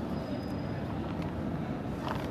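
Steady low rumbling background noise with a few faint clicks.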